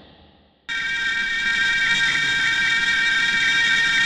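A steady electronic drone of several sustained high tones over a hiss. It starts suddenly about a second in and holds unchanged.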